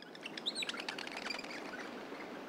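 Birds chirping over a steady outdoor background hiss, coming in suddenly out of silence: an ambience effect for an animated outdoor scene.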